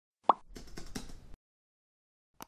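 Logo-intro sound effect: a single short pop a third of a second in, followed by about a second of faint crackly rustle.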